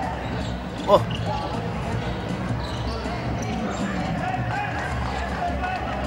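Basketball being dribbled on a hardwood court amid the steady background noise of an arena crowd.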